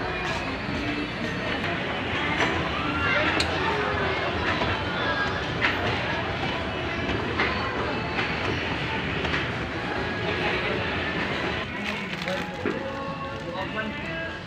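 Busy shop ambience: many people's voices chattering over a steady rumble, with occasional clicks and knocks. Someone laughs near the end.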